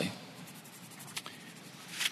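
Quiet room tone with faint rustling and a single small click a little over a second in.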